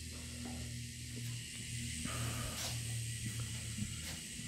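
A low, steady hum with a faint hiss underneath, with no clear event.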